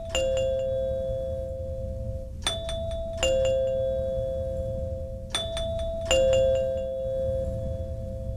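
A doorbell's two-tone ding-dong chime, a higher note falling to a lower one, sounding again about every three seconds. Each note rings on until the next.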